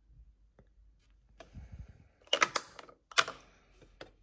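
Plastic makeup compacts clicking and clattering against each other as they are handled in a drawer: a few light clicks about a second and a half in, then two sharp bursts of clatter, just after two seconds and around three seconds.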